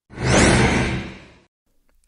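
A whoosh transition sound effect: one rush of noise that swells quickly and fades away over about a second.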